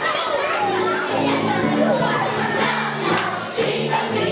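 A crowd of children shouting and calling out together over a song playing through loudspeakers, with steady low music tones beneath. A few sharp hits or claps come a little past three seconds in.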